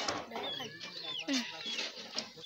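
Domestic chickens clucking, with short high chirping calls, over scattered light knocks as a wooden stick stirs maize meal into water in a plastic bucket.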